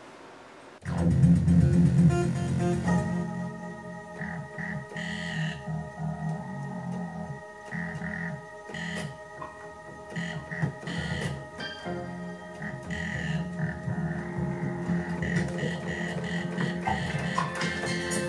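Electronic organ-style music played on a homemade three-manual MIDI keyboard, with drum-machine bass and drums in sync. It starts suddenly about a second in with a heavy bass, then moves to sustained chords with occasional drum hits.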